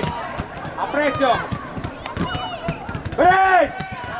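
Football players shouting to each other during play, with a loud, drawn-out call about three seconds in. Short sharp knocks of feet and ball on the pitch sound underneath.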